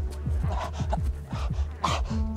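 Tense dramatic score with a low drone and a quick, regular pulse, under a man's strained gasps and groans, twice, as he is seized by a heart attack.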